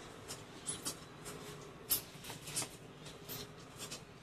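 A rusty screw being turned out of a gas forge's steel top with a small hand tool: faint, irregular scratchy clicks and scrapes of metal on metal.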